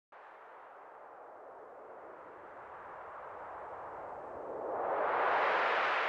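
Intro sound-effect whoosh: a hissing rush that starts suddenly, then slowly swells louder and brighter to a peak about five seconds in.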